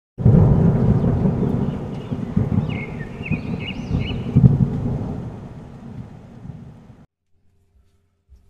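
Rumbling thunder with rain, starting suddenly and fading away until it stops about seven seconds in. A few brief high chirps sound over it about three to four seconds in.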